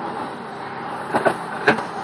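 Steady motor-vehicle noise, with two short faint sounds a little after a second in.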